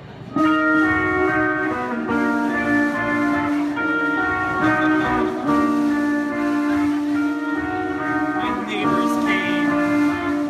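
A live band starts a song with a sudden loud entry about half a second in, then plays sustained amplified chords held over a steady low note. A wavering higher line comes in near the end.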